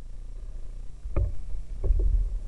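Two dull knocks, about a second in and just before the end, from the boat's hull bumping on the bank as it is moved for a seal launch. Under them runs a low steady rumble of the river.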